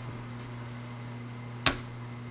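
A steady low hum of room tone, broken about one and a half seconds in by a single sharp click of a computer mouse starting the video playback.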